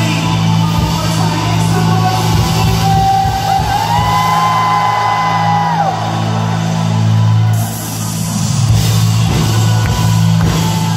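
Loud live worship-band music with singing and a steady heavy bass. A long high note glides up, is held for about two seconds in the middle, then falls away.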